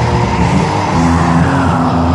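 Heavy black/thrash metal played by a band: distorted electric guitars, bass and drums, with no vocals.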